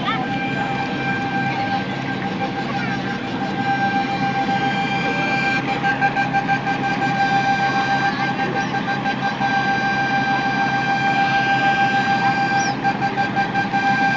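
River express boat engines running, with a steady high-pitched whine over a low rumble; the whine and the overall level grow louder from about halfway through.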